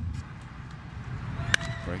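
Sharp crack of a wooden baseball bat striking a pitch, about one and a half seconds in, over the low murmur of a ballpark crowd. It is solid, hard contact: a ball that is "hammered".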